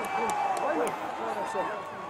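Rugby stadium crowd cheering and shouting, many voices overlapping, with a few sharp claps, as the home supporters celebrate a penalty awarded to their side.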